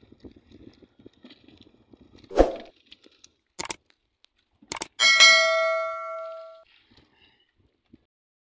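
Subscribe-button outro sound effects: a short pop, then two mouse clicks about a second apart, then a bright notification-bell ding that rings out for about a second and a half.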